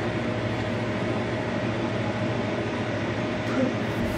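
Steady mechanical hum with an even rushing noise, constant throughout, with no distinct knocks or events.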